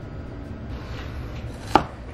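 Cleaver chopping through ground raw meat and striking a plastic cutting board, with one sharp knock near the end.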